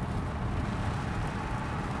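Steady low rumble of road and engine noise inside the cabin of a BMW 520d, running on its two-litre diesel at a steady cruise.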